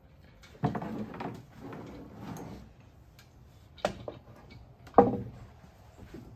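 Clunks and clatter of a milking machine's claw and hoses being handled as they come off the cow. There is a knock under a second in, another near four seconds, and the loudest just before the end, with fainter rustling between.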